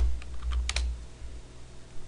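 A few computer keyboard keystrokes, the loudest about three quarters of a second in, as a typed command is finished and the Enter key pressed. A steady low hum runs underneath.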